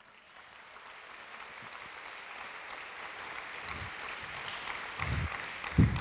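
Congregation applauding, swelling gradually from near silence and then holding steady, with a few low thuds near the end.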